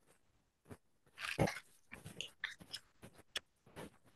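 A dog barking in the background, several short irregular barks with the loudest a little over a second in and a couple of higher yelps after it, heard over a video call's audio.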